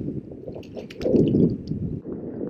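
Wind buffeting the microphone, a low rumble that swells about a second in, with light water movement and a few faint ticks of handling noise.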